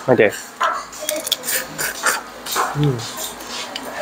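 Grilled crab shell being pulled and broken apart by hand: a run of small cracks and snaps.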